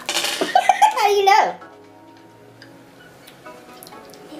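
A high-pitched, chipmunk-like wordless vocal reaction to the taste of a BeanBoozled jelly bean, its pitch wavering up and down, lasting about a second and a half and then breaking off to a quiet room.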